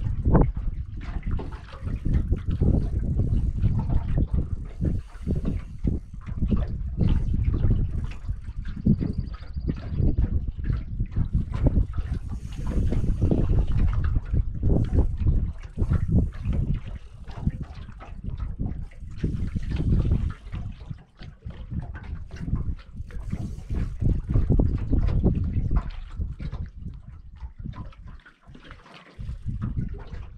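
Wind gusting over the microphone in an uneven rumble that comes and goes every second or two, easing near the end, with water trickling and lapping around an open aluminum boat.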